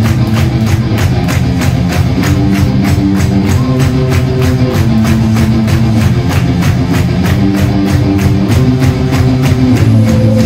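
A rock band playing an instrumental passage: electric guitar and bass holding notes over a fast, even drum-kit beat, with no vocals.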